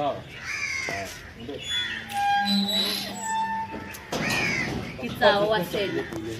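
People talking in short, loud phrases, with a few brief steady tones about two to three and a half seconds in.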